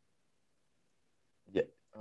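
Near silence, then about one and a half seconds in a single brief vocal sound from a man, a quick breath or throat noise, just before he starts to speak.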